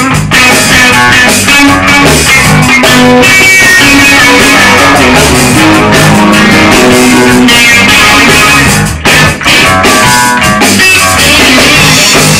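Electric guitar played loudly, rock-style, with changing notes and chords and two short breaks in the sound about nine seconds in.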